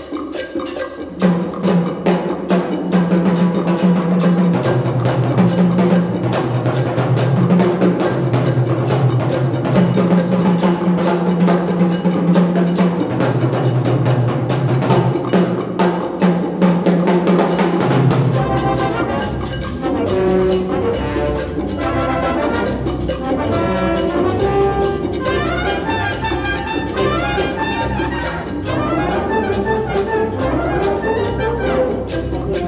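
Symphonic wind band playing a mambo: full brass and percussion over a repeating low bass figure. About eighteen seconds in, the texture changes to lighter, quicker melodic lines over a deeper bass.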